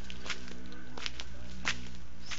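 Footsteps on a stone garden path, a sharp click roughly every three-quarters of a second, over a steady low hum.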